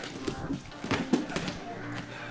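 Bodies and bare feet thudding and slapping on a grappling mat in a takedown scramble, with a cluster of impacts around the middle, over background music.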